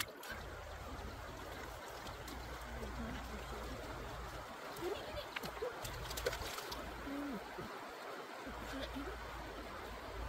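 Shallow stream water trickling, with hands splashing and rummaging through the water among the stones, and a few short knocks in the middle.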